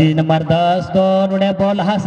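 A man's commentary voice stretching his words into long, level, sing-song held tones, a few in a row.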